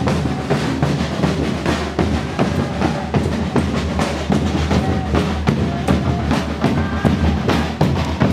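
Procession drum ensemble playing continuously: large bass drums beating with a snare-type drum over them in a dense, steady marching rhythm.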